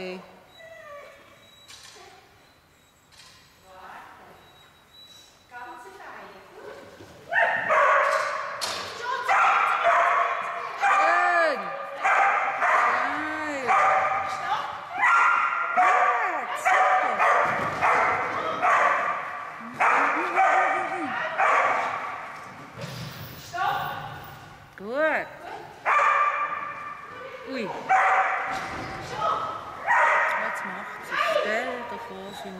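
Collie-type dog barking excitedly: quick, repeated high yips with a rise-and-fall in pitch, starting about seven seconds in and keeping on almost without a break, with a few short gaps.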